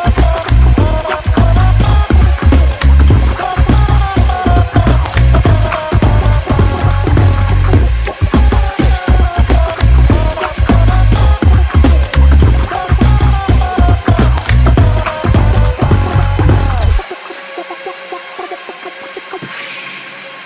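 Background music with a melody over a heavy bass beat. The bass drops out about three-quarters of the way through, leaving a quieter passage.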